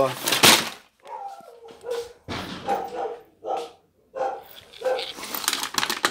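A puppy giving a string of short, high yips and whimpers, about seven calls with gaps between them.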